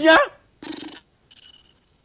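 A man's voice finishing a spoken word, then a brief, faint, muffled vocal murmur.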